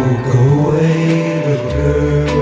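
Music: a male vocal group sings a sustained 'Oh' in close harmony over instrumental backing, in a 1960s pop ballad.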